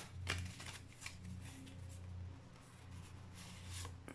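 A deck of oracle cards being shuffled by hand, with soft flicks and slides of the card edges. A few sharper flicks come in the first second and one near the end, over a faint low hum.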